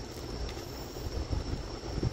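Crickets chirping in a steady high trill, over an uneven low rumble.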